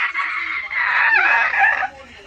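Shrill, high-pitched laughter and squealing from a woman and a young boy, long held cries with falling pitch that break off just before the end.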